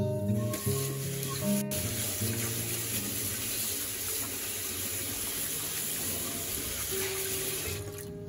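Tap water running into a stainless steel kitchen sink, splashing over hands being washed under the stream. It stops just before the end.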